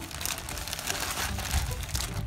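Clear plastic bag crinkling as a hand rummages in it for loose plastic toy-track pieces, a continuous crackly rustle.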